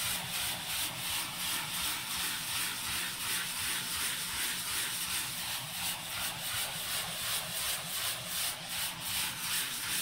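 Handheld sanding block rubbing back and forth over dried drywall joint compound, a dry scratchy hiss in a steady rhythm of short strokes. It is feathering the sharp edges of the compound around a drywall patch so they blend smoothly into the wall.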